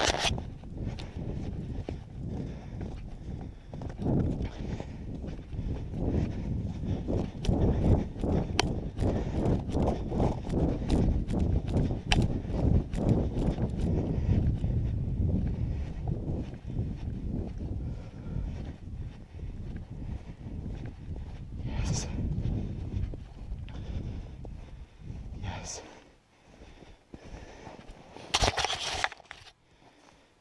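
Footsteps crunching through snow on lake ice at a walking pace, with a low rumble under them. The steps stop after about 26 seconds, and a short crunch follows near the end.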